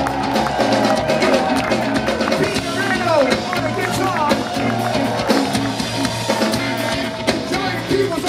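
A live band playing, with a man singing into a microphone over bass and a drum kit.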